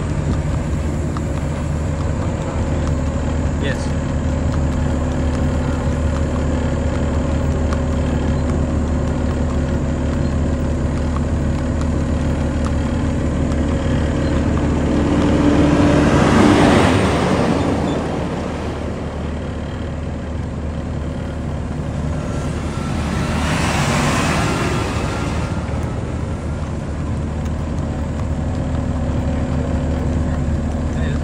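Steady low hum of a slowly driven vehicle's engine and road noise. Two swells of rushing noise rise and fall, the louder a little past halfway and another about three quarters of the way through.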